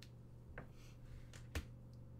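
Hands handling a trading card box and its packs: a few short, sharp clicks and snaps, the loudest about one and a half seconds in, over a faint steady hum.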